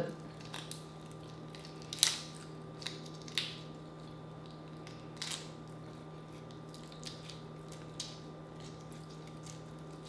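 Cooked shrimp shell cracking and crinkling as it is peeled by hand: scattered short crackles, the loudest about two seconds in, over a steady low hum.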